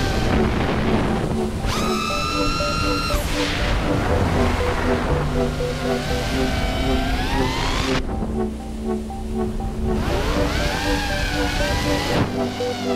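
Electronic music with a repeating pulse of synth notes and sweeping, rising synth lines. The bass drops out for about two seconds near two-thirds of the way through, then the music builds back in.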